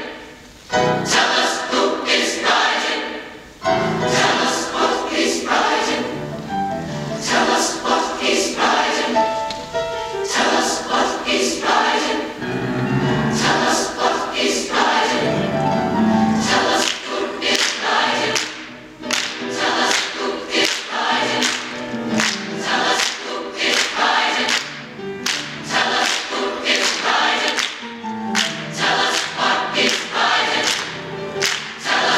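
Large massed choir of young mixed voices singing a gospel spiritual, full and loud with sharp rhythmic accents.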